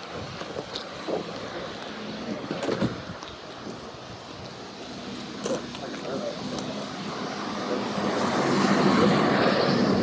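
A car's engine running steadily under indistinct chatter of several people, the voices getting louder over the last few seconds.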